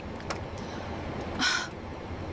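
Steady airliner cockpit engine drone, generated by Google Veo 3 as background sound. One short, harsh, breathy noise sounds about one and a half seconds in.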